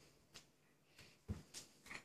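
Mostly quiet, with a few faint taps and one dull thump a little past the middle from a toddler and a play ball on a hardwood floor. There are small breathy sounds from the toddler, one of them near the end.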